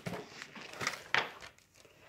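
Paper pages of a picture book rustling as the book is handled, three short crinkly swishes in the first second and a half.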